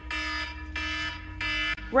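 Wake-up alarm going off: a steady run of short, even beeps, three in this stretch, about two thirds of a second apart.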